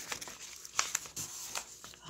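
A paper worksheet rustling as it is handled and set down on a wooden tabletop, with a few light clicks.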